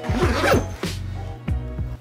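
Background music with a steady beat; in the first half second a brief zip-like rasp from a backpack being lifted off its hook.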